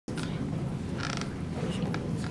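A short creak about a second in, over a steady low hum.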